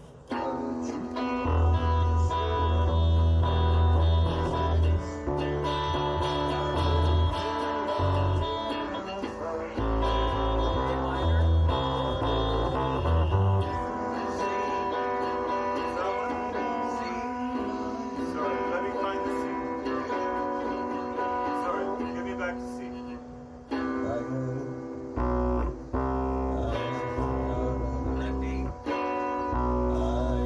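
Live improvised rock jam led by guitars over a bass line, starting abruptly just after the opening. The bass drops out for about ten seconds in the middle and then comes back in.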